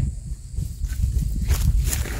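Running footsteps crunching over dry, cut plant stalks, starting about one and a half seconds in, over a steady low rumble.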